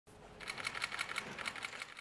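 Press photographers' camera shutters firing in rapid bursts, about eight sharp clicks a second, starting about half a second in.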